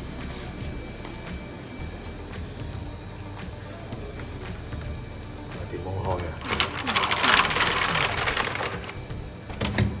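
A wooden door and its metal latch rattled hard for about two seconds, a rapid clattering, as someone tries a door that will not open.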